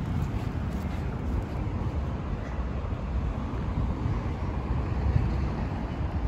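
Steady low rumble of outdoor background noise, with no clear tones or distinct events.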